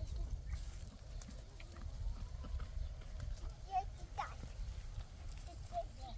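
Low rumble of wind on the microphone, with a few short, faint calls about four seconds in and again near the end.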